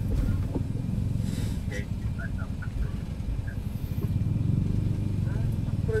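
Steady low road and engine rumble of a moving vehicle, heard from inside, with faint radio speech underneath.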